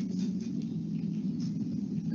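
A low steady background hum with faint scratchy handling noise over it.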